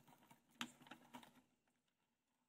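Faint scattered crackles of a plastic bag and dry grass as a cobra is worked into the bag, dying away about one and a half seconds in.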